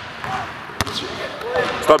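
A basketball bouncing on a hardwood court, with one sharp slap of the ball on the floor standing out about a second in. Faint voices carry in the gym around it.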